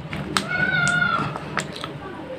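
Small plastic jelly cup crackling with sharp clicks as it is squeezed and the jelly pushed out into a palm. About half a second in there is a high, meow-like squeal lasting nearly a second.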